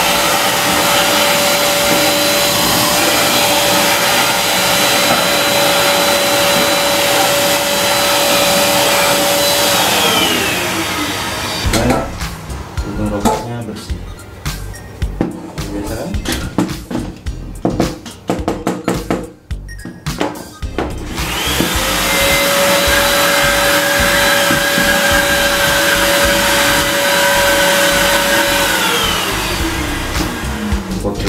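Bolde Super Hoover handheld vacuum cleaner running with a steady whine while sucking cigarette ash out of a tin, then switched off about ten seconds in, its pitch falling as the motor winds down. After several seconds of irregular knocks and clatter, the motor starts again, rises to the same steady whine and winds down again near the end.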